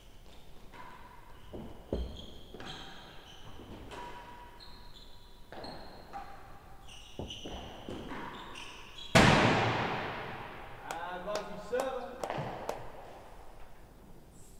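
A real tennis rally in an echoing indoor court: racket strikes and ball rebounds come every second or two, mixed with short high squeaks of shoes on the court floor. About nine seconds in there is a loud crash of the ball with a long ringing decay, the loudest sound, and a brief voice follows.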